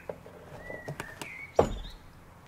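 Plastic parts of a pond pump's filter cage being handled: a couple of light clicks, then one knock about one and a half seconds in. Faint bird chirps in the background.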